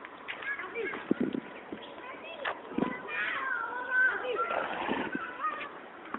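People's voices talking, with a few short sharp knocks in between.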